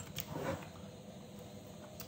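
Quiet room tone with a brief faint click shortly after the start.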